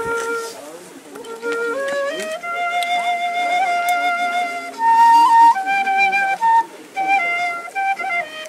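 A wooden side-blown flute playing a slow melody of long held notes that step upward. The highest and loudest note comes about five seconds in, followed by shorter notes near the end.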